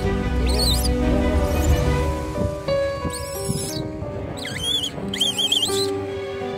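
Baby langur giving high, wavering distress squeals in four short bouts, heard over background music with long held notes.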